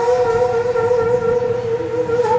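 Daegeum, a Korean bamboo transverse flute, holding one long steady note.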